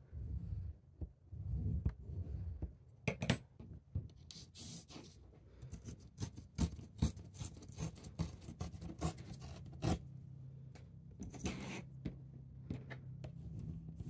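Back of a kitchen knife scraping along a steel ruler to score watercolour paper, then the paper torn along the ruler for a deckled edge and rubbed flat with a bone folder. The sounds are scratchy scrapes, papery rustles and scattered small clicks of metal and paper on the table.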